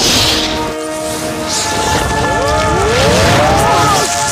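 Film soundtrack played backwards: sustained music chords under effects noise, with rising and falling gliding tones through the second half.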